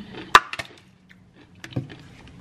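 Handling noises of a fork and plastic plate being put down: a sharp click about a third of a second in, a smaller click just after, then a duller knock near the end.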